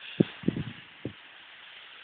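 Three dull thumps in the first second, from a handheld camera carried by someone walking, over a faint steady outdoor hiss.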